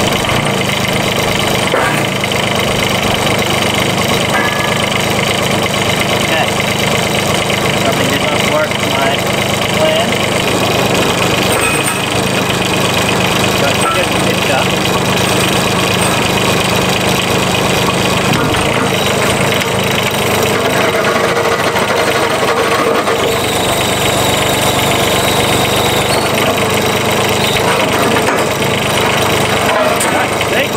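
UME15 mini excavator's engine running steadily while its hydraulics work the boom and a homemade forklift-tine attachment, the engine note shifting a few times as the hydraulics take load.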